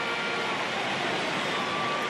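Large stadium crowd cheering and applauding just after a score from a free, heard as a steady wash of noise.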